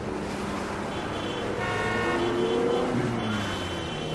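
Road traffic: a passing vehicle's engine rising in pitch, with a horn sounding for about a second midway.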